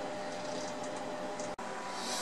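Steady background hiss of the room with a faint steady hum of tones, broken by a brief dropout about one and a half seconds in where the recording is cut.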